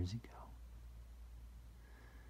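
The last spoken word trails off just after the start, then near-silent room tone with a faint, steady low hum.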